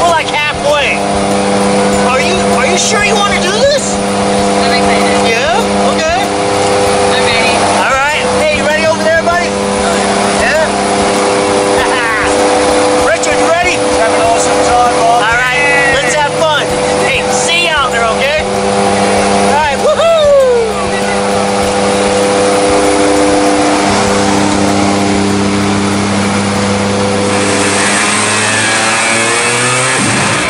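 Jump plane's engines and propellers droning steadily inside the cabin, with people's voices calling and whooping over them. Near the end a louder rush of air comes in as the plane's door opens for the exit.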